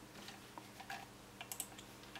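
Faint scattered clicks and ticks of a computer mouse, its scroll wheel and button, as a settings menu is scrolled and selected.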